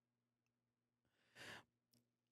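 Near silence, then a single short breathy sigh from a man about halfway through.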